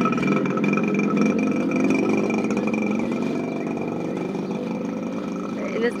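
A motor vehicle engine running close by, with a steady rumble and a faint whine above it that slowly fade away.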